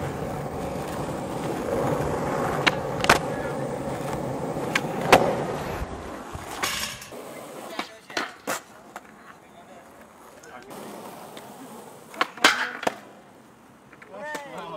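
Skateboard wheels rolling on concrete, with sharp clacks of the board and trucks hitting the ground and rail. After about seven seconds the rolling stops. A few separate knocks follow, then a loud clatter of impacts near the end.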